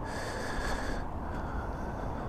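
Steady outdoor background noise with no distinct event, faint air or breath noise on the microphone.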